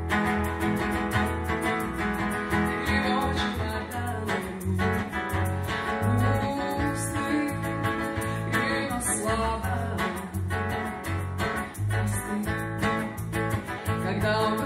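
A song played live on acoustic guitar and electric bass guitar, the bass holding a steady line of low notes under the guitar.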